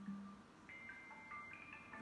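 Faint background music from a television programme, heard through the TV's speaker: a brief low note, then a few held high notes stepping up and down in pitch.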